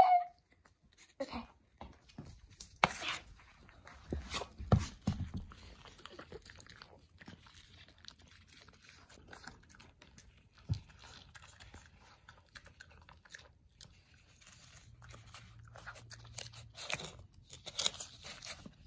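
French bulldog puppy eating from a paper plate: sharp crunches and chewing, densest in the first few seconds, then softer chewing and licking at the plate.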